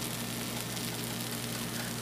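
Pancake batter sizzling faintly in a frying pan: a steady, even hiss with a low hum underneath.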